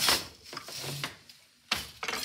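Wooden floor loom being worked: a sharp wooden knock at the start and another near the end, with a softer rustling in between as the shuttle is thrown through the shed and the beater and treadles move.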